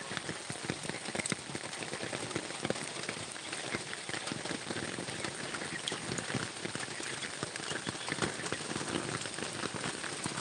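Steady rain falling, a dense patter of drops.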